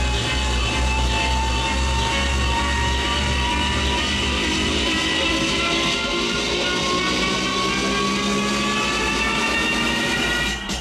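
Electronic dance music played loud through a concert PA: a synth build-up whose tones rise slowly and steadily in pitch, over a pulsing deep bass that falls away about halfway through.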